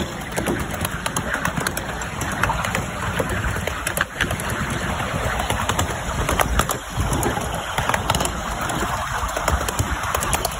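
Miniature railway train running along its track, heard from an open carriage: a steady rumble and rattle of the wheels and carriage, with frequent sharp clicks.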